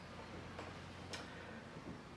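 Quiet room tone with a steady low hum and two faint clicks about half a second apart.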